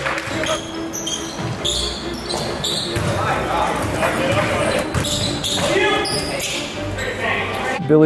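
Live basketball game sound in an echoing gym: a basketball bouncing on the hardwood floor, sneakers squeaking, and players calling out to each other.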